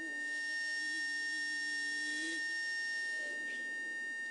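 A man's voice holding one long chanted note over a mosque loudspeaker system for about two and a half seconds, wavering slightly and turning upward at its end, as the blessing on the Prophet is drawn out. A thin, steady high whine runs underneath throughout.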